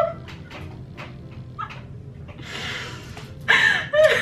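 Two women laughing hard, mostly breathy and quiet, with short gasps and catches of breath, then a loud, high burst of laughter near the end.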